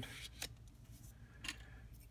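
Faint handling of kraft cardstock as it is turned over and slid on a cutting mat, with two light taps, one about half a second in and one about a second and a half in.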